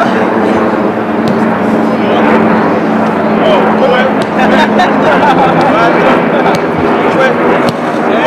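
Footballers' voices calling and chattering across a training pitch during a rondo passing drill, with the short sharp thuds of the ball being struck several times. A steady low hum runs underneath and fades out a little past halfway.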